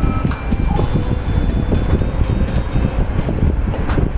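Soft background music with a few sustained notes over a steady low rumbling noise on the microphone.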